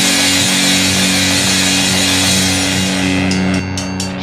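Grindcore band recording: heavily distorted guitar and bass holding low notes over a dense wash of drums and cymbals. Near the end the wash stops and starts in a few short breaks.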